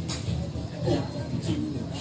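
Music playing, with a voice over it.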